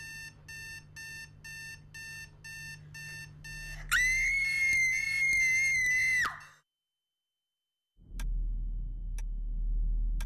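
Digital alarm clock beeping about twice a second. Then a woman's long, high scream that cuts off suddenly. After a second of silence, slow ticking about once a second begins over a low hum.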